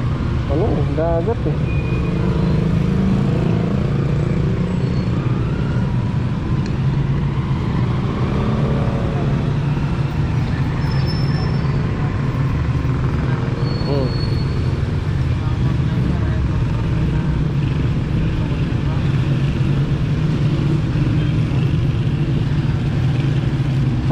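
Steady road traffic noise: a constant low rumble of vehicles on the street.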